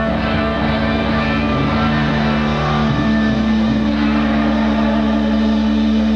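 Live punk rock band playing, with electric guitar to the fore and notes ringing on under the steady band sound, on a lo-fi bootleg concert recording.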